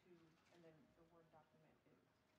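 Near silence with faint off-microphone talking in the background.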